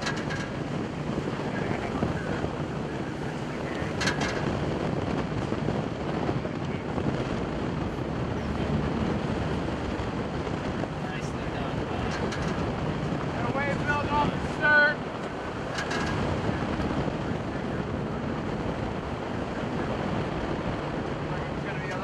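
A Coast Guard boat's engine running under steady power, its low drone mixed with wind buffeting the microphone and sea noise around the hull. About two-thirds of the way in there is one short, loud pitched sound.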